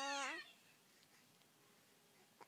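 A baby's drawn-out vocal squeal, one pitched note that drops lower and ends about half a second in.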